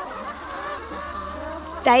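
A flock of brown hens clucking, a continuous low chatter from several birds at once.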